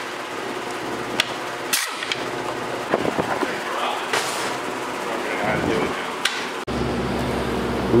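Scattered clicks and knocks of a hand driver and plastic fan shroud as the 10 mm fan bolts come out of a radiator. From about seven seconds in, a steady shop hum.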